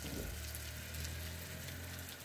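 Steady hiss of rain falling and runoff water running over wet pavement, with a low steady rumble underneath.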